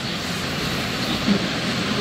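Steady, even rushing background noise with no speech, constant in level.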